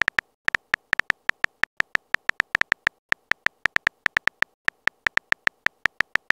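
Phone on-screen keyboard typing sound effect: a rapid run of short, pitched key clicks, about six a second, one per typed letter, with a couple of brief pauses.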